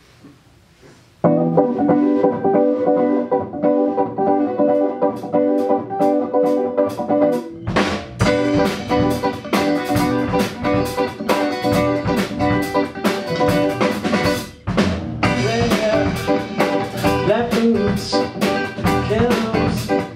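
Live small band: an electric guitar opens the song alone about a second in with repeated chords. About six seconds later the drum kit and a bass line come in and the band plays on together.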